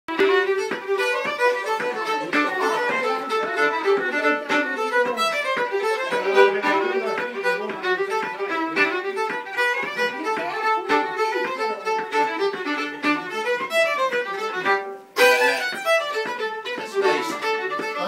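Fiddle playing a reel in a quick, steady run of notes, with a brief break about fifteen seconds in before it carries on.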